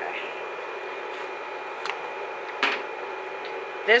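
A few light clicks and taps of a metal spatula prying a glued blush pan loose from its cardboard compact: two sharper clicks around the middle and fainter ones either side, over a steady background hiss and hum.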